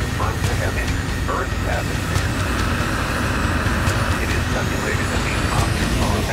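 Recorded sci-fi intro soundscape of a deathcore track: a steady, loud rumble with hiss, like a large engine or spacecraft, overlaid with short garbled radio-style voice fragments.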